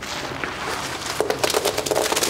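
A fabric backpack being turned over and shaken, its contents rustling, then a quick clatter of small wrapped candies and crinkling wrappers spilling out from about a second in.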